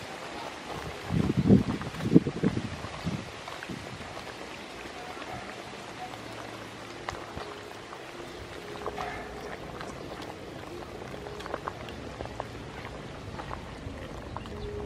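A large aluminium pot of soup boiling hard, a steady bubbling hiss. About one to three seconds in there are a few louder splashy bursts as a handful of tamarind leaves goes in and a steel ladle stirs them down.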